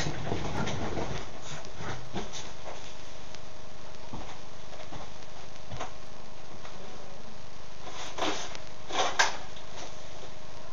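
Steady room hiss with a faint steady hum, a few soft rustles and clicks, and two short noisy bursts about eight and nine seconds in.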